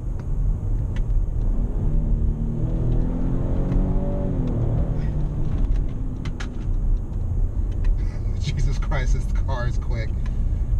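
In-cabin road and tyre rumble from a 2018 Lincoln Navigator L on the move. Its twin-turbo 3.5-litre V6 rises in pitch for a couple of seconds, peaking about four seconds in, then falls back.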